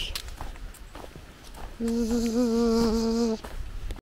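A person hums one steady, held note for about a second and a half, starting about halfway through.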